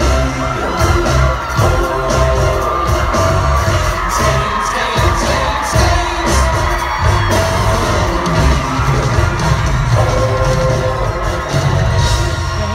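Loud live pop music from a stadium concert sound system, with a heavy drum beat, some singing and a cheering crowd.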